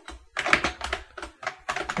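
Computer keyboard typing: a quick run of about a dozen keystrokes, starting about a third of a second in.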